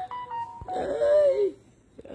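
A woman's drawn-out, wavering vocal sound, a laughing moan, lasting just under a second, after a few short steady tones at the start.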